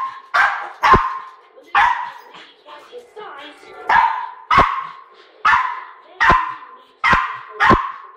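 Small terrier barking repeatedly in sharp, high single barks, about ten in all, with a short lull of softer sounds around the middle.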